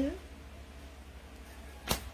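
A low steady hum, then a single sharp click near the end.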